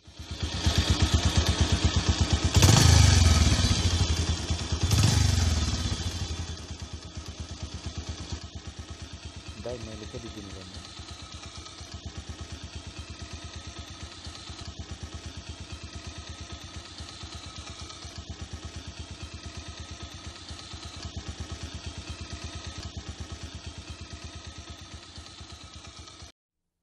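Motorcycle engine running with a fine, steady pulse. It is loud at first, with two surges whose pitch falls away, then settles to a steadier, quieter running.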